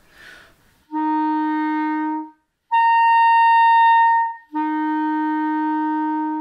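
Clarinet playing three held, tongued notes: a throat-tone F, then the C a twelfth above it, then the F again. The fingering stays the same throughout, and the upper note is reached by changing voicing alone, without the register key.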